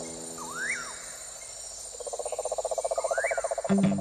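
Nature-style sound effects over the tail of a fading held chord: two short swooping chirps, dipping then rising, and from about halfway a fast, even pulsing trill like an insect or frog. Plucked guitar-like notes start just before the end.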